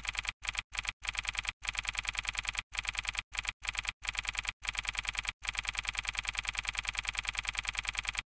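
Typewriter sound effect for text typing out on screen: rapid mechanical key clicks, about ten a second, in runs broken by short pauses.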